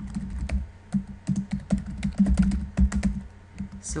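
Typing on a computer keyboard: a quick, irregular run of key clicks with a low thud under each keystroke, as a line of code is entered.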